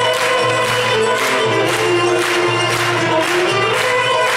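Turkish art-music ensemble playing an instrumental passage between sung lines, violin and kanun among the instruments, over a steady low bass line and a light even beat.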